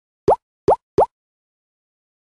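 Three short popping sound effects in quick succession in the first second, each a quick rising 'bloop', as items pop onto an animated end screen.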